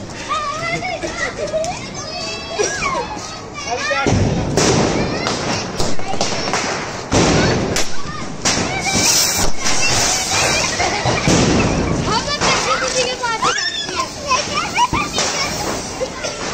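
Firecrackers going off on a street: a lit ground cracker fizzing and sparking, with a loud noisy stretch starting suddenly about four seconds in and several sharp bangs. Children's voices and shouts come and go over it.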